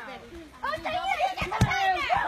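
Children's voices calling out, with one sharp thump of a rubber playground ball being struck about one and a half seconds in.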